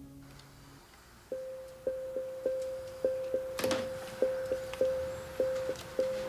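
Soundtrack music: a lingering orchestral chord dies away, then about a second in a single high plucked note starts repeating in an uneven, halting rhythm, with one sharper hit midway.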